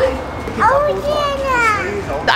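A toddler's high-pitched, sing-song vocal calls: one rising and falling about half a second in, then a longer one gliding downward near the end.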